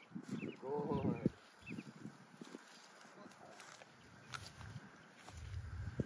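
A brief wavering animal call about a second in, amid soft footsteps and scattered light knocks in grass.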